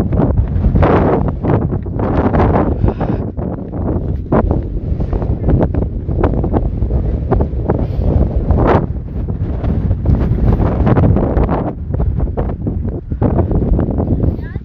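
Strong wind buffeting the phone's microphone, a loud rumble that rises and falls in gusts throughout.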